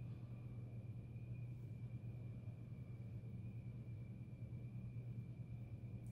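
Quiet room tone: a steady low hum with a faint, steady high-pitched tone above it, and no distinct sounds.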